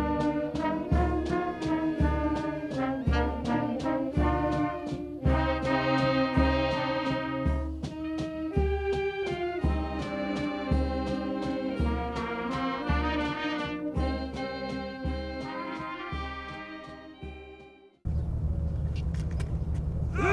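Military brass band playing a march, brass over a steady bass drum beat; the music fades out near the end and gives way abruptly to a steady low outdoor rumble.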